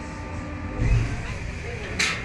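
A low thump about a second in, over a faint steady hum and faint voices.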